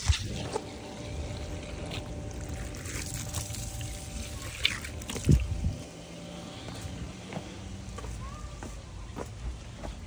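Garden-hose water running steadily through a shop vac hose, flushing the soap out of it, with a single knock about five seconds in.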